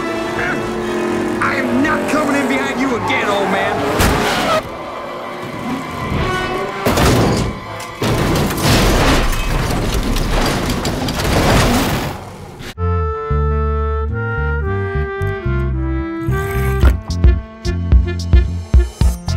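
Animated-film race soundtrack: car engines and music, then, about four seconds in, a long dense noisy stretch as a stock car crashes and tumbles. About thirteen seconds in, this cuts off suddenly to a music track of clear stepping notes over a bass line, with sharp hits near the end.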